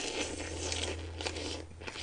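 A person slurping saucy noodles into the mouth in one long, noisy suck, followed near the end by a few short wet chewing sounds.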